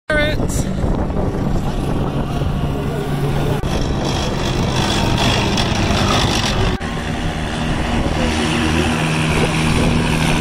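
CVR(T) light tracked armoured vehicles driving past on grass: a loud, steady engine hum with the rumble of the running gear. The sound dips sharply for a moment about seven seconds in.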